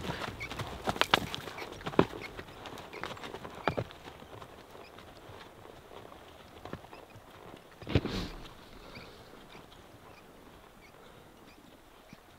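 Horses walking through snow: an irregular run of hoof steps that grows fainter after about four seconds, with one louder sound about eight seconds in.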